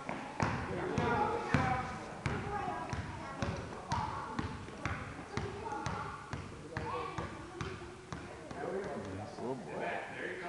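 A basketball bouncing on a hardwood gym floor, irregular thuds as children dribble and play, with voices chattering around the court.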